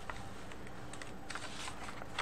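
Paper worksheet handled and slid across a desk: a few short, light rustles and crackles of the sheet.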